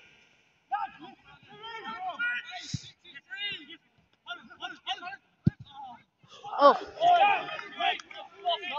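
Men's voices shouting across a football pitch, with a man exclaiming "oh, oh" over and over near the end, the loudest part. Two short, dull thumps stand out, about three and five and a half seconds in.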